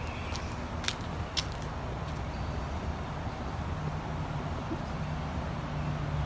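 Steady low outdoor rumble and hum, like distant traffic, with a faint steady tone coming in about halfway. A couple of light clicks fall in the first two seconds.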